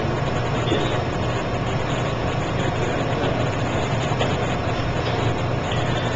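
Steady low hum with hiss and no speech: the room and recording noise of a lecture hall, where a slide projector is running.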